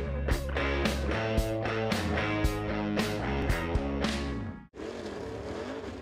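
Rock-style intro music with a steady beat that cuts off suddenly about four and a half seconds in. Super late model dirt race cars' V8 engines then run on the track, their pitch rising and falling as they circle.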